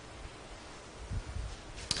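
A pause in speech: quiet room tone from the sanctuary's microphone, with a soft low thud about a second in and a single short click just before speech resumes.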